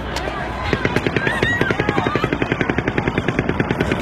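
Automatic gunfire: a rapid, even, unbroken string of shots starting under a second in, recorded on a bystander's phone, with people's voices faintly under it.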